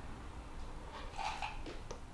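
Faint sipping of hot soup from a spoon, a soft short slurp a little past a second in, with a small click near the end.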